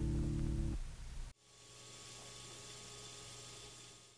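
The final chord of a solo acoustic guitar rings out, dies away and stops abruptly just over a second in. Faint tape hiss with a low steady hum follows, from the playback of the 1964 reel-to-reel master tape.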